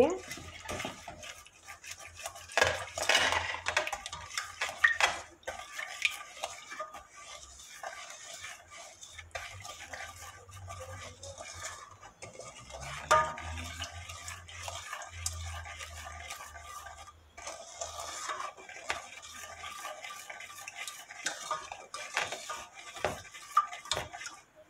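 Silicone spatula stirring a sugar, corn syrup and water mix in a stainless steel pot, with irregular scraping and light knocks against the metal. The mixture is not yet heated, so there is no boiling.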